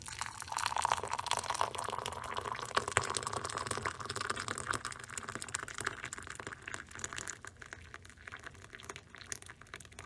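Water poured from a kettle into a mug over a tea bag, splashing as the mug fills. It comes up about half a second in and gets quieter toward the end.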